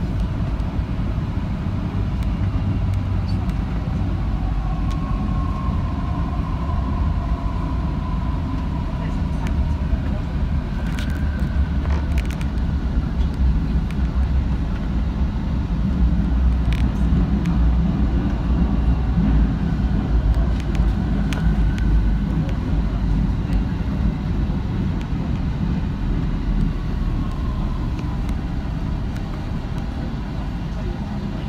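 MTR South Island Line metro train running on its track, heard from the front of the train: a steady low rumble with a faint whine at times and a few sharp clicks from the rails, easing a little near the end.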